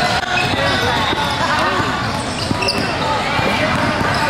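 Gym game noise: many overlapping voices of players and spectators, with a basketball being dribbled on the hardwood court.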